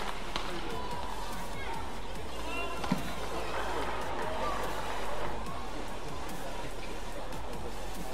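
Badminton doubles rally: rackets hitting the shuttlecock, with one sharp hit about three seconds in, over background music and arena noise.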